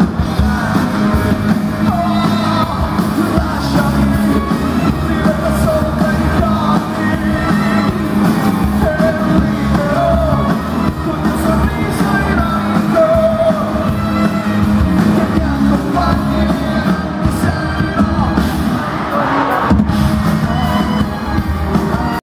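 Live pop-rock band playing loudly, with a male lead singer singing into a handheld microphone over a steady beat, heard from the audience in a large arena hall.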